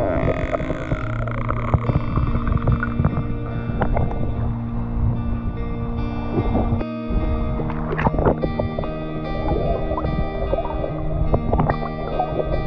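Background music made of sustained, held chords and tones, with a brief break in the low end about seven seconds in.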